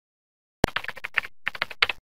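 Computer keyboard typing sound effect: a quick run of about a dozen key clicks with a short break midway, stopping suddenly.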